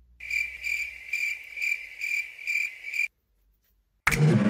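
Cricket chirping: a steady high trill pulsing about twice a second, which starts and then cuts off suddenly after about three seconds.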